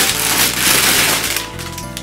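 Clear cellophane gift bag crinkling as a hand rummages inside it and pulls something out; the crinkling stops about a second and a half in. Background music plays throughout.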